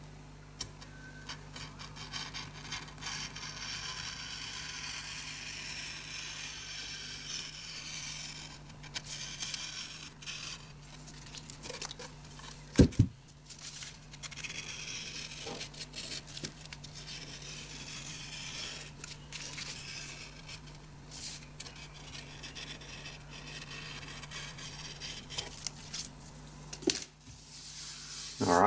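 A blade trimming overhanging wallpaper flush with the edge of a particle-board table top, with long scraping strokes and the tearing and crinkling of the paper offcuts as they come away. A single sharp knock comes about halfway through.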